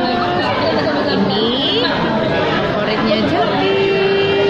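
Indistinct chatter of several overlapping voices in an indoor public space, with no clear words.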